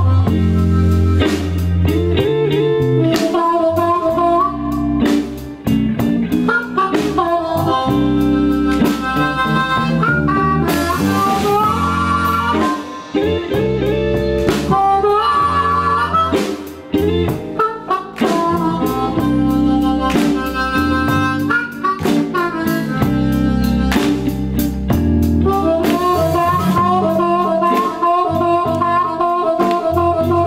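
Live blues band playing, with an amplified harmonica taking a solo over bass guitar and the rest of the band, played through a handheld microphone.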